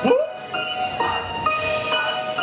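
Live hip-hop music played through a club PA: held keyboard notes that step in pitch every half second or so over a steady hi-hat beat. A man's shouted "woo!" through the microphone opens it.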